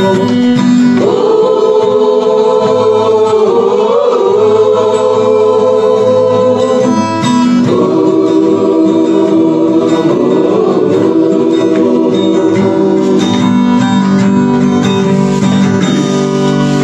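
Gospel song: a choir singing long held notes over instrumental backing, loud and steady throughout.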